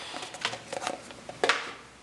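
Light clicks and taps of hands handling metal fidget spinners and their tin and plastic cases, with one sharper click about one and a half seconds in.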